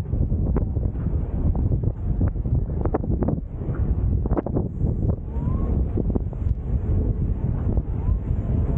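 Wind buffeting the camera's microphone: a loud low rumble that rises and falls in gusts, with a few brief clicks.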